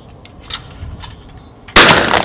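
A single loud shotgun blast from an over-under shotgun near the end, fired at a thrown sporting clay target, its report ringing on after the shot. A faint click sounds about half a second in.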